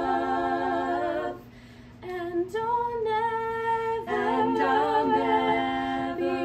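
Three women singing a cappella in harmony, holding long sustained notes. The voices drop away briefly about a second and a half in, then come back on new held chords.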